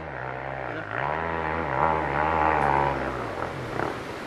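Dirt bike engine running hard under load on a steep hill climb, its pitch dipping and rising, then dying about three seconds in as the bike stalls.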